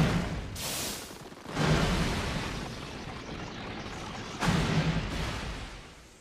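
Cartoon fight sound effects: a series of heavy crashing blasts. The biggest hits come about one and a half and four and a half seconds in, and each one fades away before the sound dies down near the end.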